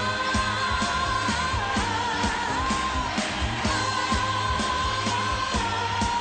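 Live pop band music with a steady drum beat of about two strikes a second, under long held high melody notes that waver slightly.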